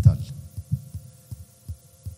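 A man's amplified voice speaks one word at the start, then pauses; through the pause come soft, irregular low thuds over a faint steady hum from the sound system.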